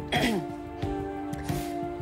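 Background score with long held notes and a soft beat. Just after the start comes a brief throat-clearing sound that falls in pitch.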